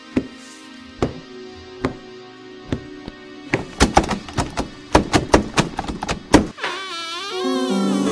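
Horror film score: a held drone with a slow, regular thud about once a second, then a fast flurry of strikes lasting about three seconds, then a wavering, bending tone near the end.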